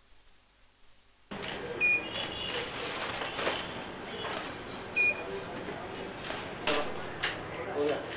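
After about a second of near silence, the sound cuts in suddenly to the noisy bustle of a photoshoot with indistinct voices. Two short, high electronic beeps come about two seconds apart, and sharp clicks come near the end.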